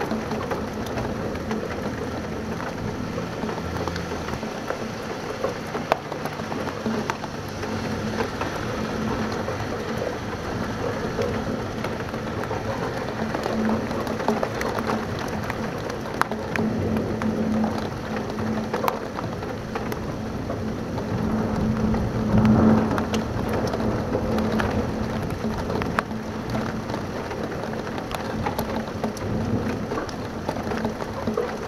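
Heavy supercell thunderstorm rain beating steadily against a window, with many scattered sharp drop ticks. Thunder rumbles, swelling loudest about three quarters of the way through.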